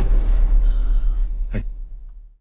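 Layered film-trailer gunshot hit, shotgun blast with explosion and punch layers, its deep boom ringing out and fading over about two seconds. A short breathy vocal sound comes about one and a half seconds in.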